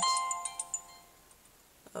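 Mobile phone text-message alert: a short run of chime notes that rings on and fades out about a second in.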